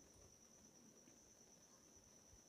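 Near silence: faint room tone with a steady high-pitched whine.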